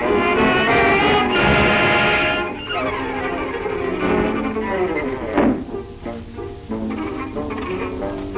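Orchestral cartoon score: a loud held chord for about two and a half seconds, then falling slides, a quick swooping glide about five seconds in, and short plucked string notes near the end.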